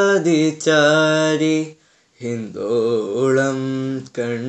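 A teenage boy singing a Malayalam song unaccompanied, in long held notes that bend and waver. His phrase breaks off just before two seconds, and after a short silence a lower phrase begins.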